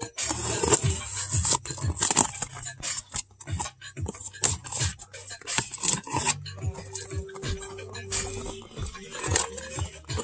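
A knife slitting the packing tape along a cardboard shipping case, then the cardboard flaps scraping and crackling as they are pulled open, in many quick irregular strokes. Music plays faintly underneath.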